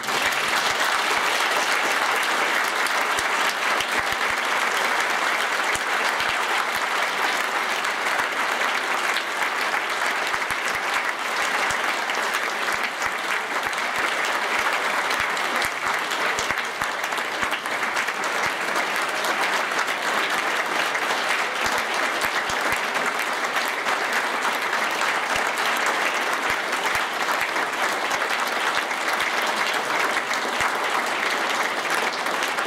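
A large auditorium audience applauding: dense, even clapping that holds at a steady level throughout, the closing applause for a lecture.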